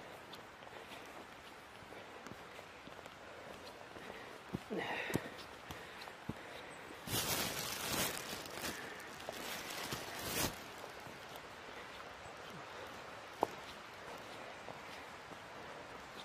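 Footsteps of a walker on wet, mossy woodland ground, with loud rustling for a few seconds about halfway through.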